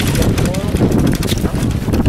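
Wind buffeting the camera microphone, a loud irregular rumble and crackle, with people's voices mixed in.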